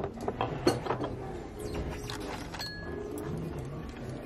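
Restaurant dining-room background with a few quick clinks and knocks of tableware in the first second, and a brief light clink of dishes a little past halfway.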